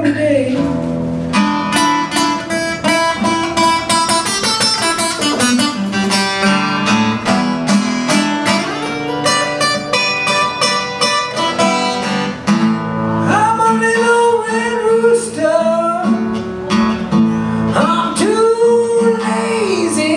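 Solo acoustic guitar played live, a busy run of picked notes through the first half, then a man singing over the guitar from a little past halfway, with held, wavering notes.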